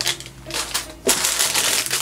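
Plastic LEGO polybags and minifigure packets crinkling and rustling as a hand rummages among them in a plastic storage bin, starting softly and growing denser from about a second in.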